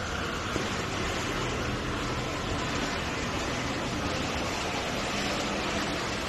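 Steady background noise of a large indoor exhibition hall: a constant wash of distant ambient sound with a faint low hum and no distinct events.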